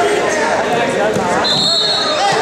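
Voices of coaches and spectators calling out during a wrestling bout, with a brief high, steady squeak about one and a half seconds in.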